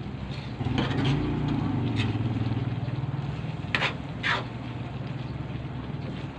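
A spatula stirring a coconut-milk stew in an aluminium pan, scraping and clicking against the pan a few times, over a steady low engine-like hum.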